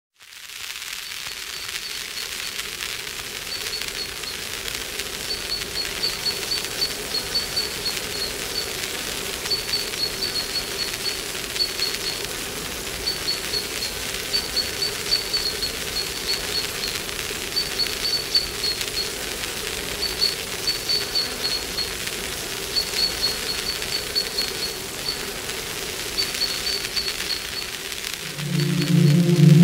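Ambient soundscape intro to an easy-listening track: a steady hiss under a faint low steady tone, with short high-pitched chirping trills repeating every second or so at the same pitch.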